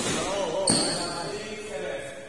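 A badminton racket strikes the shuttlecock once about two-thirds of a second in, a sharp crack with a brief ringing of the strings, while a man's voice calls out around it.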